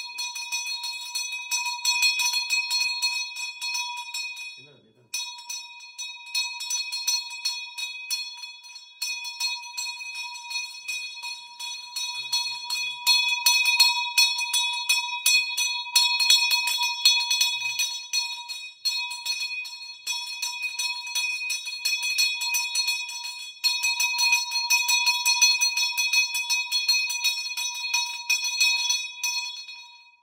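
Brass hand bell rung fast and without letup, giving a bright, continuous ringing of the kind that accompanies a puja offering. It breaks off briefly about five seconds in and again about nine seconds in, then stops at the end.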